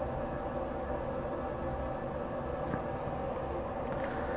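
A steady background hum with faint, even tones, unchanging throughout.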